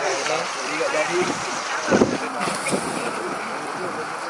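Indistinct voices of several people chatting beside a wood campfire, over a steady hiss, with one voice briefly louder about two seconds in.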